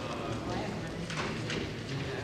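Indistinct chatter of several people talking at once in a large room, with scattered knocks and clatter.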